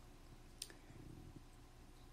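Near silence: room tone, with one short click about half a second in.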